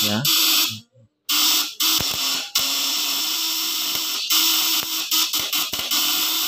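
Homemade fish-stunner inverter buzzing: its vibrating contact-breaker points chatter with a harsh, hissing buzz over a low transformer hum while it drives a halogen lamp load. It cuts out for about half a second about a second in, then runs on with a few short breaks.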